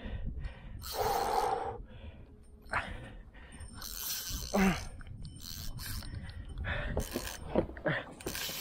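A man's heavy gasping breaths and a short grunt, about four and a half seconds in, as he strains against a large crevalle jack pulling on his spinning rod.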